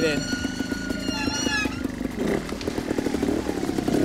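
Trials motorcycle engine running at low revs with a fast, even putter as the bike is ridden slowly over rocks beside a stream. A high whine sits over it and slides down in pitch about a second and a half in.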